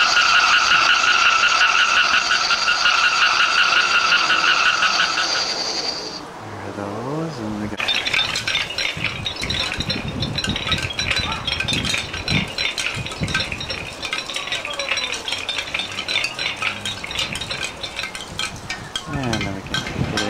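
Button-activated Halloween decoration playing its electronic sound effect through a small speaker: a warbling high tone for about six seconds, then a dense crackling, clicking stretch with a high tone running through it.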